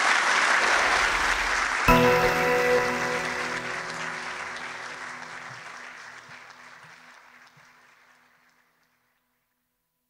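Audience applauding, cut off about two seconds in by a single ringing musical chord, an outro sting that slowly fades away.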